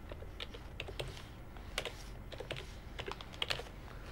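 Typing on a computer keyboard: an irregular run of key clicks with short pauses between them.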